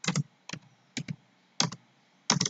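Keys being typed on a computer keyboard: four separate keystrokes about half a second apart, some heard as a quick double click.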